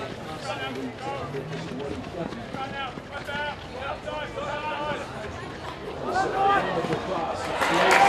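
Outdoor voices calling out across a hockey pitch in short, repeated calls over a low background of field ambience, with sharper knocks and louder noise coming in near the end.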